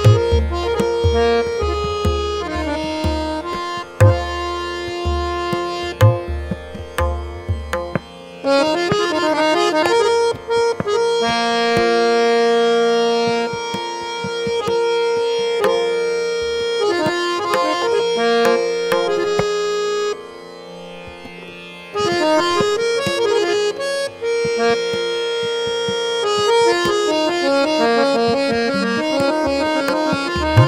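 Harmonium (samvadini) playing a melody of held and running reed notes, accompanied by tabla. The deep bass-drum strokes stop about eight seconds in and return near the end, while the melody plays on with lighter drum strokes. The music drops briefly in level a little after the middle.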